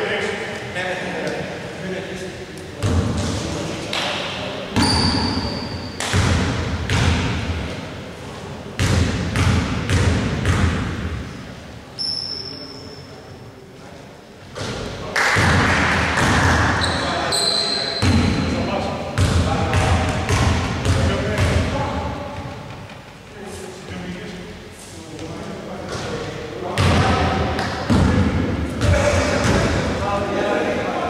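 A basketball bouncing on a hardwood gym floor, roughly one bounce a second, with a few short, high sneaker squeaks. Players' voices echo in the large hall.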